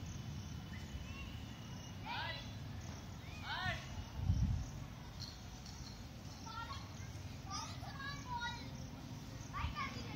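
Distant voices calling out in short shouts, some of them children's, over a steady low rumble. A low thump comes about four seconds in.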